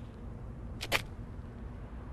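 A quick mechanical double click a little under a second in, over a low steady hum.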